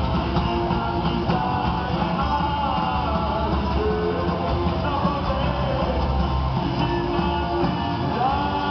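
Punk rock band playing live: electric guitars, bass and drums, with a sung lead vocal.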